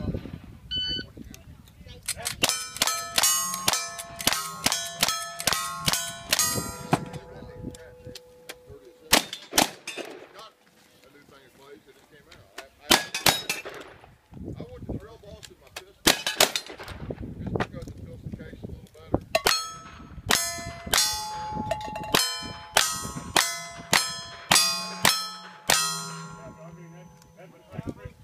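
Rifle shots fired in quick strings at steel plate targets, each shot followed by the ringing clang of the steel being hit. A run of about ten shots at roughly two a second comes first, a few spaced shots follow, then a second run of about ten near the end.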